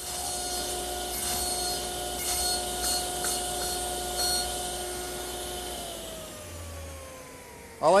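Table saw running with a steady hum while its blade cuts away wood in several quick passes to form a small tongue on a short strip. Near the end the saw is switched off and the hum falls in pitch as the blade spins down.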